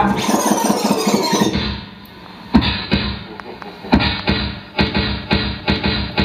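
DJ music over PA speakers: a dense track with a falling sweep drops away about two seconds in, followed by a sparse run of sharp, stuttering hits, several a second.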